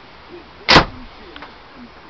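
A single loud, sharp crack about three-quarters of a second in: a catapult shot at full draw with very strong gamekeeper bands firing a 12 mm lead ball, dying away within a quarter second.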